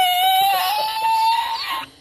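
A man's long, high-pitched, squealing laugh held on one note. It drops sharply in pitch at the start, then holds steady and breaks off shortly before the end.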